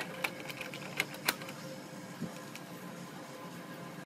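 Plastic cover of a Ricoh copier's laser unit being fitted and pressed into place by hand: a run of light clicks in the first second or so, then only a faint steady background.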